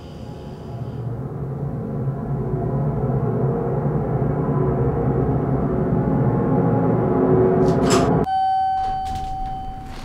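Elevator running with a low rumble that builds louder over about eight seconds, then cuts off suddenly. A single held chime tone follows, signalling the car's arrival.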